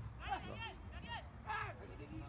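Three short, high-pitched shouts from players on the soccer pitch, over a steady low rumble.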